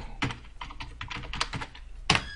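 Computer keyboard being typed on: a quick, irregular run of key clicks as a short word is entered.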